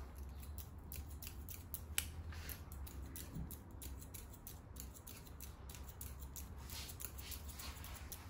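Barber's hair-cutting scissors snipping hair held up on a comb: a quick, irregular run of faint snips, one sharper about two seconds in.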